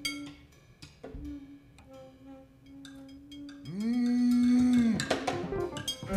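Free-improvised jazz with bowed double bass, alto saxophone and scattered percussion strikes, played quietly over a held low note. A little past halfway a louder note glides up, holds for about a second, and falls away.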